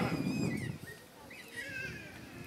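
A pause in a man's speech over a loudspeaker: his last word trails off and fades, and faint, high, wavering animal calls come and go.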